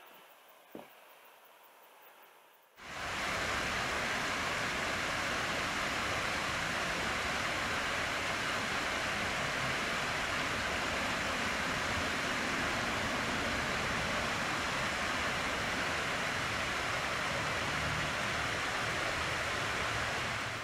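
Water rushing over a small stepped ledge cascade on a creek: a steady, even rushing that starts abruptly about three seconds in.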